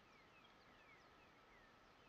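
Near silence, with a faint bird calling in a quick run of short, falling chirps, about four a second, over a faint steady high hum.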